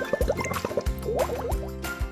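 Cartoon bubble sound effect for shampoo lathering: a quick run of short rising bloops, with a second cluster a little past the middle, over light children's background music.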